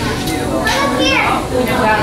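Children's voices and chatter, with one high child's voice sliding down in pitch about a second in.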